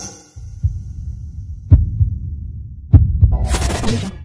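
Intro sound design for a loading-screen animation. A high tone fades out at the start, then deep bass thumps pulse like a heartbeat, and sharp bursts of static-like glitch noise come in near the end.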